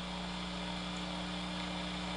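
Steady electrical hum of a few fixed low pitches over a faint even hiss, with no other events.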